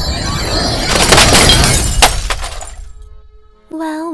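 A crash-and-shatter sound effect over a low rumble, swelling to its loudest a second or two in, with a couple of sharp cracks, then dying away.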